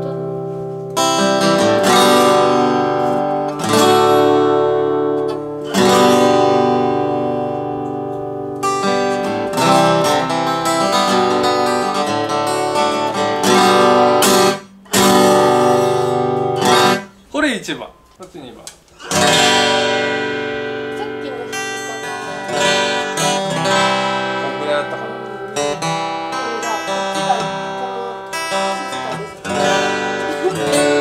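Steel-string acoustic guitar strummed hard, chord after chord left to ring out, with a short break about halfway through before more hard strumming. The guitars are played strongly to show how the bass of the vintage guitar comes out when struck hard, which the cheap one does not.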